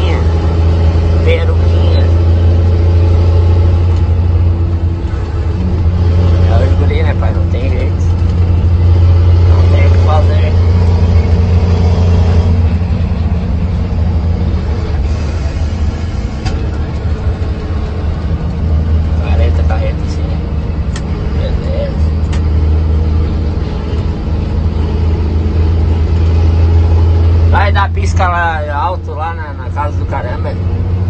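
Steady low engine drone heard from inside a moving truck's cab on the highway, holding an even pitch throughout.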